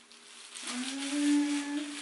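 A woman hums one held, slightly rising note for about a second, starting about half a second in. Under it is the faint crackle and squish of plastic-gloved hands working hair dye into locs.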